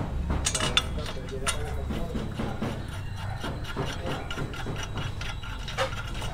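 Metal clicking and scraping as a 17 mm caliper bracket bolt is threaded in by hand and the steel bracket shifts against the knuckle, with a few sharp clicks in the first second and a half and another just before the end.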